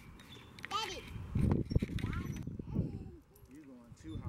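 Playground swing squeaking in short, pitch-bending squeals as it swings back and forth, with a rushing noise from the swinging motion.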